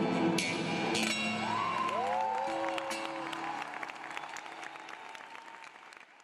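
Acoustic guitars strike the closing chords of a live folk song, the last chord ringing on while the audience applauds, with a few cheers. The sound fades away toward the end.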